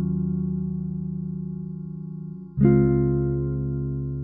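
Omnisphere software instrument playing back sustained chords with a strum applied by FL Studio's strumizer: one chord rings and fades, then a new low chord is struck about two and a half seconds in and rings out.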